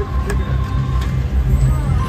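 Casino floor din around a slot machine: a loud low rumble with faint electronic machine tones and background voices.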